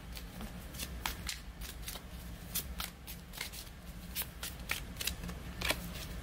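A deck of tarot cards being shuffled by hand: a run of quick, irregular card clicks and slaps.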